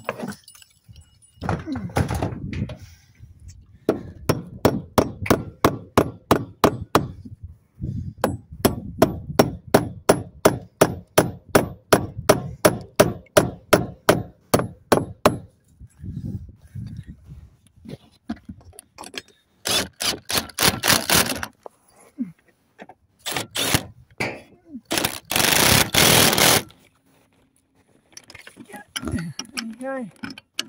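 Metal-on-metal hammer blows knocking bolts into a timber rafter so they won't spin, a long steady run of about three strikes a second. Near the end a rattle gun (impact wrench) runs in three short bursts, tightening the nuts on the bolts of a steel roof tie-down bracket.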